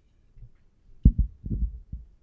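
Handling noise on a microphone: a cluster of dull, low thumps about a second in, as it is gripped or passed between speakers.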